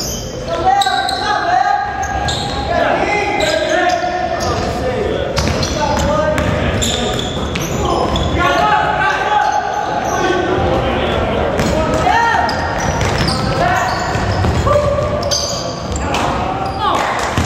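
A basketball bouncing on a hardwood gym floor during play, with players' voices throughout, all echoing in a large gym.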